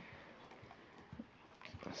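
Quiet room with a few faint, soft taps and knocks in the second half, like small movements on the floor.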